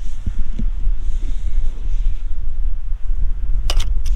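Strong wind buffeting the microphone. Near the end comes a short, sharp clack: the Mamiya RB67's mirror flipping up out of the light path for mirror lock-up.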